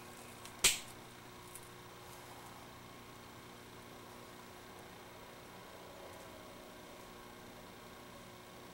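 Side cutters snipping through a LiPo battery's red lead wire once, a single sharp snap a little over half a second in, over a steady low hum.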